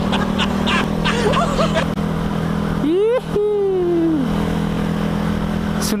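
A sport motorcycle engine runs at a steady cruise, with a man laughing over it. About three seconds in comes a long pitched vocal sound that slides up and then slowly falls.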